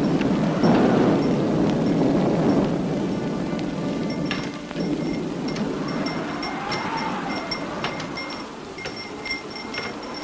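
Heavy rain pouring down, loudest in the first few seconds and then easing. From about four seconds in, a Japanese wind chime (fūrin) rings in short, busy tinkles over it.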